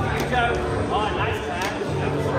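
A voice over background music with a steady low bass line.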